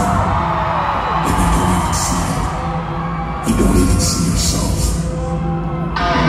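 Live arena concert: a song intro with a steady low sustained drone, over which the crowd screams and cheers in two swells, about a second in and again past the middle.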